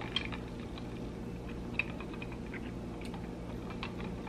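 Light, scattered clicks and ticks of ice cubes shifting in a plastic cup and against a metal straw as an iced drink is sipped, over a low steady hum.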